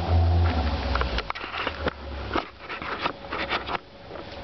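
Camera being handled and set down: a loud low rumble of the microphone being handled for about the first second, then a run of irregular clicks, knocks and rustles.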